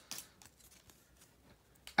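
Faint, scattered clicks and soft slides of a stack of baseball cards being handled and turned between the fingers.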